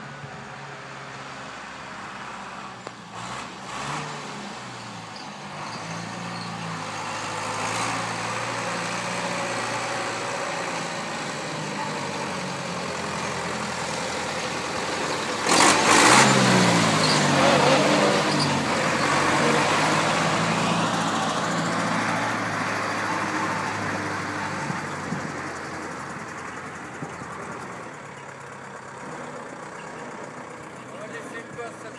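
Diesel engine of an MB Trac 65/70 forestry tractor driving at low speed: it grows louder as the tractor approaches, is loudest as it passes close by about halfway through, then fades as it moves away.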